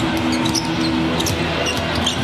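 A basketball being dribbled on a hardwood court, with short high clicks over a steady low hum of arena sound.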